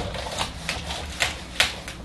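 A whiteboard being wiped clean with an eraser: an irregular run of short rubbing strokes and clicks, several a second.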